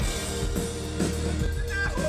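Live rock band playing an instrumental passage: electric guitar over bass and drums, with the drums keeping a steady beat of about two hits a second.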